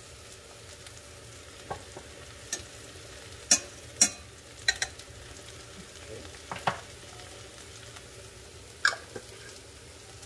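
A metal spoon clinking against a glass jar and a stainless steel frying pan as hot pepper paste is scooped out and dropped onto sliced eggplant. There are several sharp clinks, the loudest about three and a half to four seconds in. Beneath them is a low, steady sizzle of the eggplant frying in oil.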